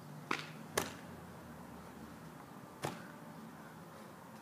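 Three short, sharp knocks: two close together in the first second, a third near three seconds in.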